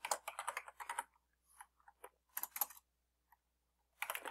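Typing on a computer keyboard: a quick run of key clicks in the first second, then a short burst of a few keystrokes about two and a half seconds in.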